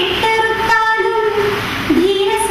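A high voice singing long, held notes that slide from one pitch to the next.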